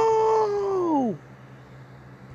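A long drawn-out howling cry, held on one pitch, then sliding down in pitch as it fades out about a second in.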